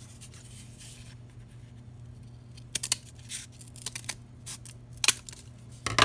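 Scissors cutting through corrugated cardboard along a diagonal line: a faint rasp at first, then a run of short, sharp snips in the second half, the loudest just before the end.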